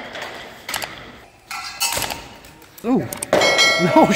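Steel training longswords clashing in sparring, with a few sharp metallic clangs in the first half, then a bell-like ding ringing on near the end.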